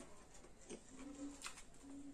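Faint low cooing: two short steady notes, one about a second in and one near the end, among soft scattered clicks.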